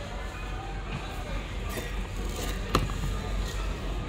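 Shop ambience: faint background music and distant voices, with one sharp click or knock a little past halfway.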